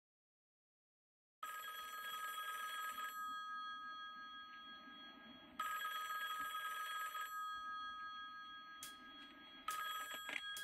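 A telephone bell ringing in the classic pattern: bursts of about two seconds with pauses of a few seconds between them, three rings beginning. It starts after a second and a half of silence.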